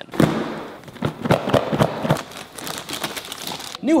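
Clear plastic packaging bag crinkling and rustling in irregular crackles as a new Wi-Fi router sealed inside it is handled and unwrapped.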